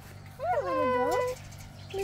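A goat bleats once, a single call about a second long that swoops up and then holds its pitch.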